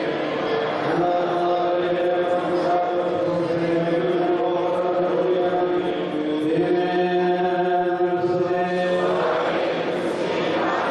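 Congregation chanting a liturgical hymn in unison: long held notes that step to a new pitch about a second in and again around six and a half seconds, with a short break near the end.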